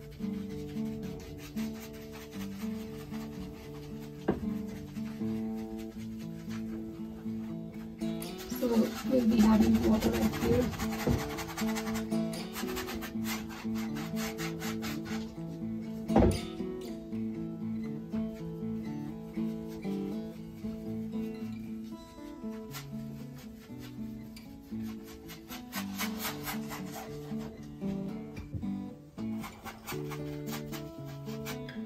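Paintbrush scrubbing and stroking on a stretched canvas over soft background guitar music. There is a louder rustling stretch about nine seconds in and a single sharp knock a little past the middle.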